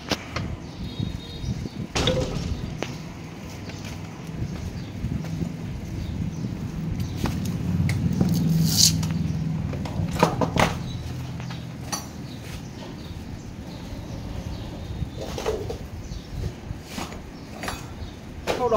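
Scattered clicks and knocks of an aluminium motorcycle clutch cover being handled and pressed onto the engine case, with a low rumble that swells and fades in the middle.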